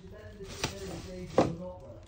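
Two sharp snips of hand wire cutters cutting through copper cable cores, about three-quarters of a second apart, the second louder.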